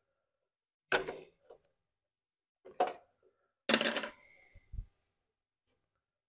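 Small engine parts handled and set down by hand, making three short bursts of clinking and clattering about one, three and four seconds in, the last the loudest and longest, followed by a brief dull thump.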